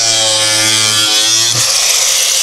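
Angle grinder running with a steady whine, then, about one and a half seconds in, the tone gives way to a rough grinding noise as the disc cuts into a sheet of plexiglass.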